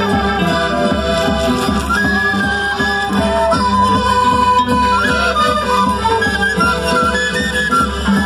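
Traditional Andean festival music for the Qhapaq Negro dance: a melody over a steady beat.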